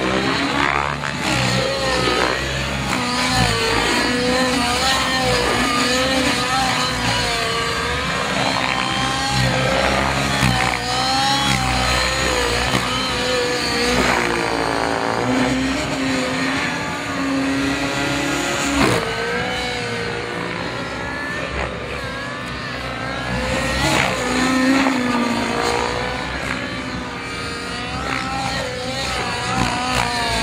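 Radio-controlled helicopter in aerobatic flight: its smoky glow-fuel engine and rotors run hard, and the pitch rises and falls over and over as it manoeuvres and passes by.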